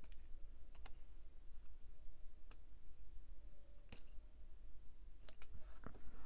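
A few faint, separate clicks and taps of metal tweezers and fingernails handling a planner sticker, spaced about a second apart and coming more often near the end.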